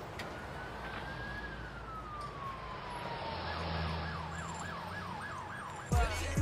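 Siren: one long wail that rises slightly and then falls slowly, then switches to a fast yelp of about four rising-falling sweeps a second. A low hum joins about halfway through.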